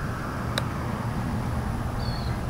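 A golf chip shot: one sharp click of an iron striking the ball about half a second in, over a steady low rumble.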